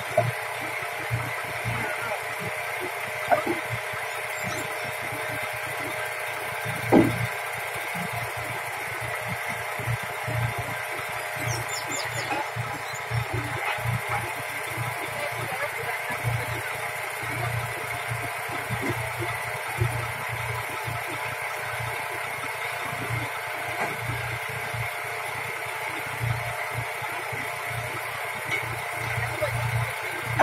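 Truck tractor's engine idling steadily, with a few sharp knocks over it, the loudest about seven seconds in.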